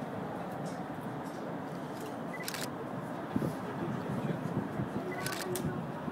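Several voices chattering in the background, with a sharp click about two and a half seconds in and a quick double click near the end.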